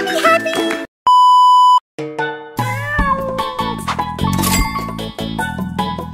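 A loud, steady beep lasting under a second, about a second in, set off by short gaps. Then from about halfway, a meme cat meowing over background music with a steady beat.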